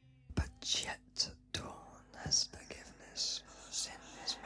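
A whispered voice in short, breathy phrases, heard as a string of brief hissing bursts with gaps between them. A faint music bed lies underneath.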